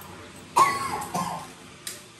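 A person coughing twice, the first cough loud and sudden, followed by a sharp click near the end.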